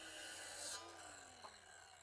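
Very faint sound of a Ryobi cordless circular saw cutting, with a falling hum about a second in as the blade winds down, then near silence.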